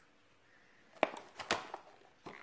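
Two sharp handling knocks about half a second apart, after about a second of near silence.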